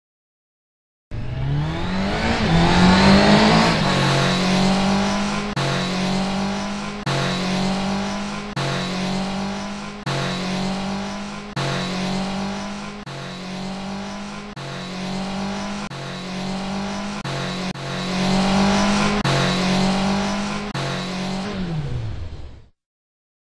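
Motorcycle engine sound effect: it starts about a second in, revs up with a rising pitch, then runs at a steady speed in a pattern that repeats about every one and a half seconds, like a looped sample.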